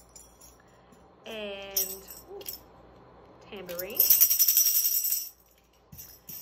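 Small jingle bells on a handle shaken, a bright metallic jingle lasting about a second past the middle, with a brief jingle a little before.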